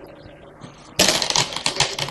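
Go stones clicking and clattering in quick succession as a hand places and picks up stones on the board, starting about a second in after a quiet first second.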